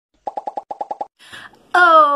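Editing sound effect for an animated heart graphic: a quick run of about ten short, pitched plops, roughly a dozen a second, lasting under a second.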